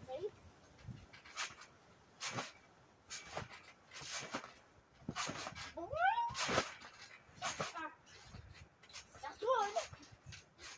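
Repeated bounces and landings on a backyard trampoline, a sharp impact from the mat and springs roughly once a second. A high wavering call rises about six seconds in and comes again shortly before the end.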